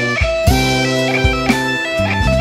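Instrumental music: a melody of held, pitched notes over a low bass line, with a steady beat.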